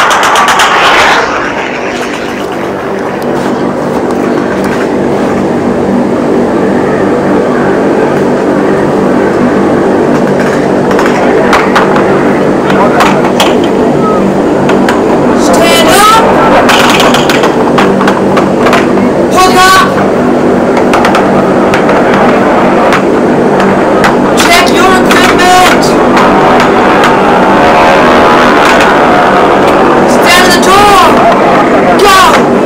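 Aircraft engines droning loudly and steadily, heard from inside the cabin. Short shouted voices cut through the drone a few times in the second half.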